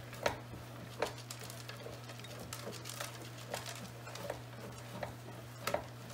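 Hand-cranked stainless steel meat mixer churning a batch of ground elk and pork, with a light knock a little more than once a second as the paddles turn, while frozen pepper jack cheese cubes are poured in. A steady low hum runs underneath.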